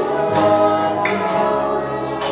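Live worship band music: slow, sustained chords with singing voices, and a sharp accent about a third of a second in.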